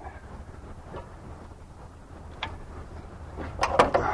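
Raised car hood and its prop rod being handled: a single click about two and a half seconds in, then a quick cluster of sharp clicks and knocks near the end, over a low background rumble.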